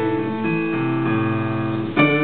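Digital piano playing a slow Greek song with sustained notes and chords.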